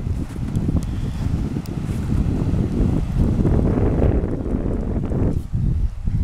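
Wind buffeting the microphone: a loud, uneven low rumble that swells and dips.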